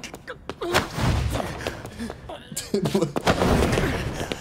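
Anime fight-scene sound effects: a run of heavy, booming impacts and crashes, with a man grunting near the end.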